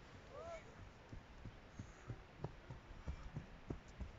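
Fell runners' footsteps on a grassy hillside path: faint, quick soft thuds that grow louder as a runner comes up the slope toward the microphone.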